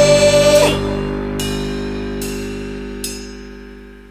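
Punk rock band playing full out, then breaking off under a second in, leaving a held chord ringing and slowly fading away. Three light ticks come through the fade, about one every 0.8 seconds.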